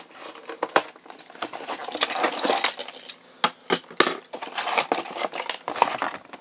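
Hard plastic toy parts being handled and pulled apart: irregular sharp clicks and clacks, with a stretch of rustling and crinkling about two seconds in.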